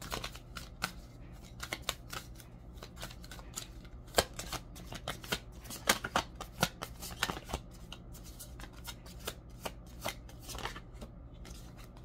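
A deck of tarot cards being shuffled by hand: a run of soft, irregular card snaps and slides, over a faint steady low hum.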